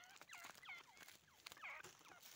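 Teetar (francolin partridge) giving a quick run of short, squeaky chirping calls, each note a brief glide in pitch. The calls are faint and come several times a second.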